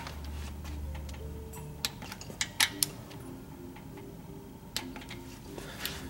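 Torque wrench and socket clicking on the rear timing belt cover bolts as they are tightened to 8 ft-lbs: a few sharp clicks about two to three seconds in, and a few fainter ticks near the end.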